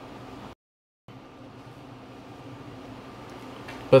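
Faint steady room hum with no distinct event. It drops out to total silence for about half a second, about half a second in, an edit cut, and a man's voice starts at the very end.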